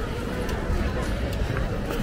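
Wind buffeting the microphone in a steady low rumble, over the general chatter of people outdoors.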